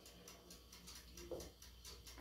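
Near silence: room tone with a faint low hum and one brief faint sound a little past the middle.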